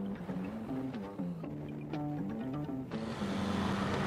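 Background music: a light melody of short stepped notes. About three seconds in, the steady noise of riding a scooter in street traffic comes in under it.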